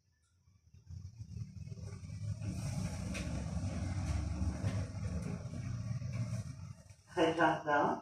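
Sodimas V Motion lift car travelling down one floor: a low rumble with a high hiss starts about a second in, holds steady, and dies away near the end as the car slows and stops. A short voice is heard in the last second.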